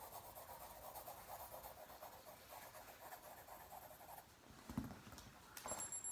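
Faint, rapid scribbling of a drawing tool on paper, stopping about four seconds in. A soft thump follows near the five-second mark.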